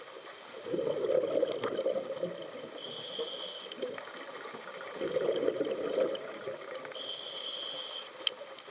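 Scuba diver breathing through a regulator underwater: two breath cycles, each a gurgling rush of exhaled bubbles followed by the hiss of an inhalation through the demand valve.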